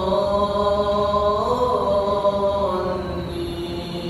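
An imam's chanted Arabic recitation leading the Maghrib prayer, carried over the mosque's loudspeakers: one long melodic phrase whose held notes step lower in pitch in the second half.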